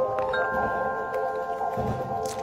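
Soft background music of sustained, chime-like tones, with a few faint taps.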